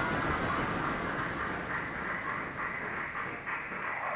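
Electronic music: a progressive trance intro made of a noisy, filtered texture with no beat yet, its treble gradually closing off.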